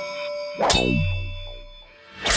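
Electronic logo sting: a sharp hit about two-thirds of a second in, with a quickly falling pitch sweep that settles into a low boom, over high ringing tones that fade away.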